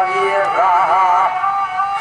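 A man singing a Balochi classical song (sot), drawing out a long note that wavers and bends in ornaments.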